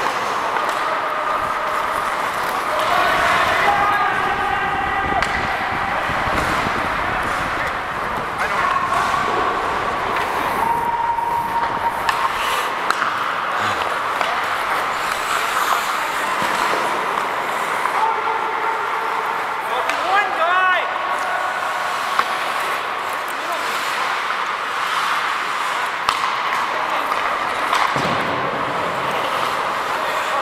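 Ice hockey in play heard on the ice: steady scraping of skates with scattered clacks of sticks and puck, and players' voices calling out a few seconds in. A brief trilling whistle sounds about two-thirds of the way through.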